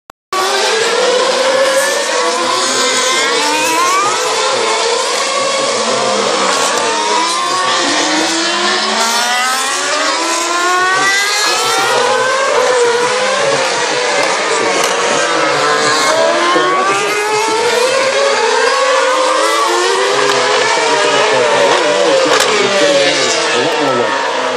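2013 Formula One cars' 2.4-litre V8 engines at very high revs, several overlapping as they pass, one after another. The engine notes fall as the cars brake and downshift for the corner, then climb through the gears as they accelerate away.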